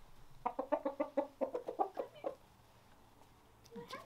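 Red rooster giving a fast run of short, pitched clucks, about seven a second, that slows slightly and stops a little after two seconds in: the staccato alarm clucking that roosters make at a perceived threat.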